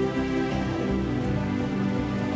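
Background music of steady held notes that change pitch every half second or so.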